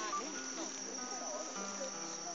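A steady high-pitched drone of insects, crickets or a similar chorus, with faint, indistinct sounds beneath it.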